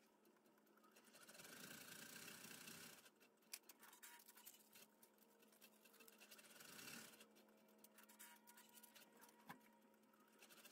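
Near silence, with faint rustling as a fabric jacket and a clear plastic bag are handled, and a few small clicks.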